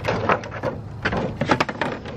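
Christmas ball ornaments being handled in and around a lantern: a run of light clicks and knocks, several in quick succession about one and a half seconds in.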